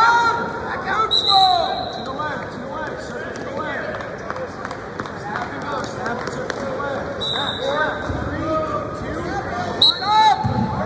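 Wrestling shoes squeaking on the mat as two wrestlers scramble on their feet, over a babble of voices in a large gym.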